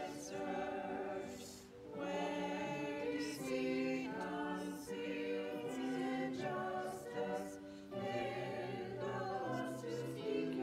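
A small group of singers, a man and three women, singing a hymn together in sustained phrases, with short pauses for breath about two seconds in and again about seven and a half seconds in.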